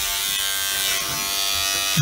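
Electric beard trimmer running with a steady buzz, held against a beard.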